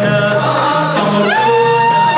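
Live folk music from a troupe of male singers with instrumental accompaniment. About a second and a half in, a long high note slides up and is held steady.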